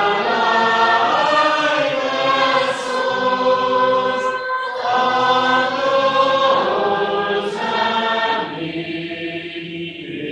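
A congregation singing a psalm unaccompanied, in sustained held notes, with a brief pause about halfway through.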